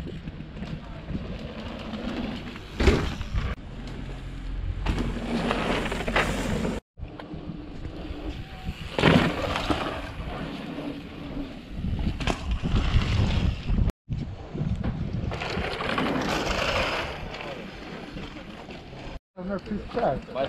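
Indistinct voices and wind on the microphone, in short clips that cut off abruptly about 7, 14 and 19 seconds in.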